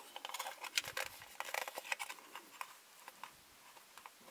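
Fingertips and fingernails rubbing and tapping on a small plastic toy display counter while smoothing a sticker onto it: a quick run of light clicks and scratches that thins out near the end.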